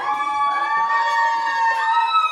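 Long, held high-pitched vocal calls. The pitch glides up at the start, then holds steady, with more than one voice overlapping.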